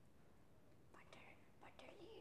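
Near silence, with a faint whisper-like voice and a few soft clicks in the second half.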